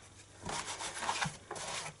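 A Stampin' Chamois cleaning pad rubbed over a red rubber stamp to clean off the ink: soft rubbing strokes that start about half a second in.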